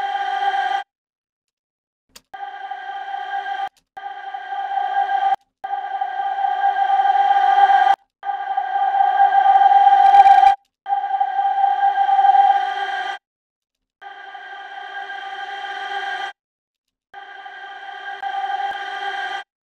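One held note from a soloed vocal track playing back in a mix, heard alone. It repeats about seven times with short silent gaps. Its loudness and tone shift and peak around ten seconds in while an EQ band on the track is being adjusted.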